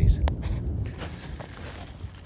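A last spoken word, then handling noise from a hand-held phone camera being turned: a sharp click early on and a low rumble that fades away.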